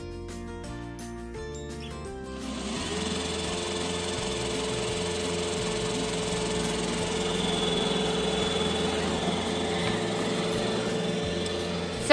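Roomba i4 robot vacuum running across a hardwood floor: a steady whirr of motor and brushes with a held whine, coming in about two and a half seconds in. Background music with a stepping bass line plays throughout.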